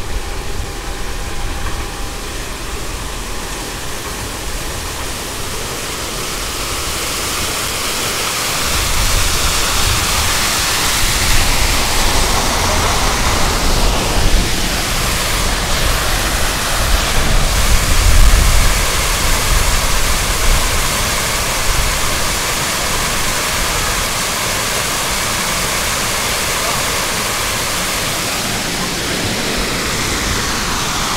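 Wind rushing over the microphone with a gusty low rumble, growing louder in the middle and easing off toward the end.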